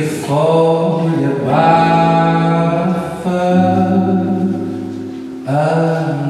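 A man singing long, held notes, with acoustic guitar accompaniment.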